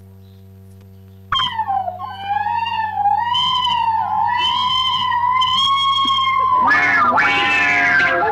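Background film music: after about a second of faint hum, a single high, wavering melodic line comes in, dipping then rising and holding. It ends in a louder, fuller passage near the end.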